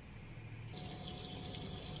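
A steady rushing hiss starts about two-thirds of a second in, with a faint steady tone beneath it, over a low background hum.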